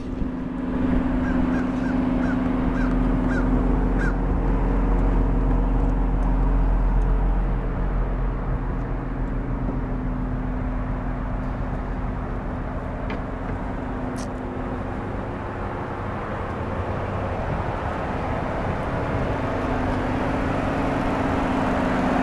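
2006 Dodge Charger's 3.5-litre High Output V6 idling steadily.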